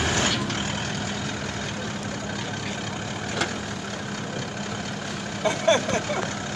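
An engine idling steadily with a constant low hum.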